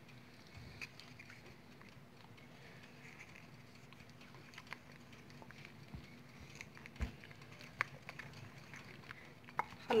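Wooden spoon stirring thick melted chocolate in a ceramic bowl: faint wet stirring with a few light knocks of the spoon against the bowl, the loudest about seven seconds in.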